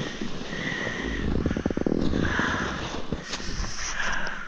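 Snowboard sliding over tracked snow: a continuous hiss and scrape from the board, with a brief rapid chattering rattle about a second and a half in.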